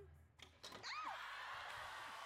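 Spring-loaded Pie Face game arm smacking a plate of whipped cream into a woman's face about half a second in, followed by her short high shriek. The studio audience then screams and cheers.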